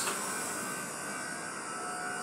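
Steady background room noise: an even hiss with a faint hum underneath, with no sudden sounds.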